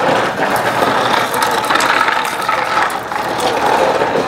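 A small plastic wheeled toy pushed across paving stones, its wheels rattling in a dense, continuous clatter of clicks.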